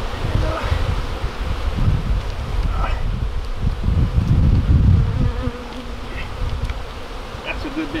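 Honey bee colony buzzing as a slab of the hollow oak limb that holds their nest is pulled open. Loud low rumbling noise runs under it for the first five seconds, then eases off.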